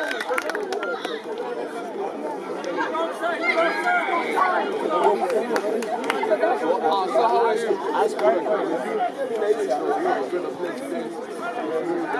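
Many voices talking at once around a rugby pitch: a steady babble of overlapping chatter from spectators and players, with no single voice standing out.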